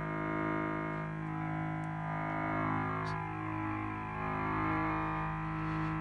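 Synthesizer oscillator of a Keen Association Buchla-format 268e Graphic Waveform Generator playing a steady low drone. Its tone keeps shifting as turning the wave-drawing knob in motion-detector mode redraws the wave shape.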